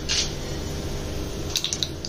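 Mustard seeds and urad dal sizzling steadily in hot oil in a stainless steel pan, with a few small crackles near the end as the mustard seeds start to pop.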